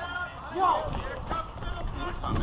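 Footsteps of a person running on pavement, a quick series of light knocks, with a short vocal exclamation about half a second in.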